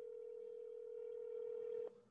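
Telephone ringback tone heard through a smartphone's speaker held to the microphone: one steady tone about two seconds long that cuts off sharply, signalling that the called phone is ringing.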